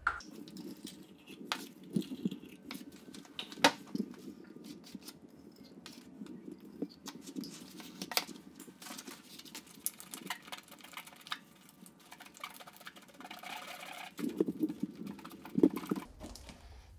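Soft, irregular ticks, taps and scrapes of two-part epoxy and hardener being squeezed out onto cardboard and stirred together with a wooden stick, the stirring busier and louder near the end.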